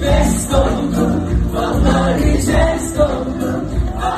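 Live pop concert music: a band playing with sung vocals through the hall's PA, heard loud from within the audience, with a choir-like spread of several voices singing.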